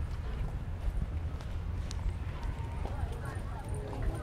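Footsteps of someone walking with a handheld camera, over a steady low rumble of wind on the microphone.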